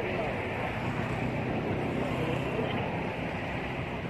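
Steady rumbling background noise with faint, indistinct voices.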